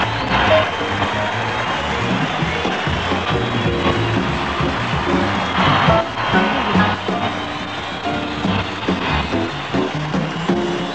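Live jazz trio music, piano, bass and drums, playing steadily behind a singer.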